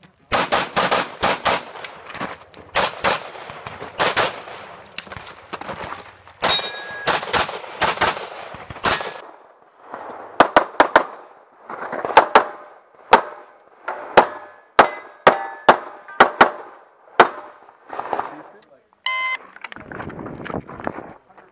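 Pistol shots in rapid succession, mostly in quick pairs with short pauses between strings. Near the end, a short electronic beep: a shot timer's start signal.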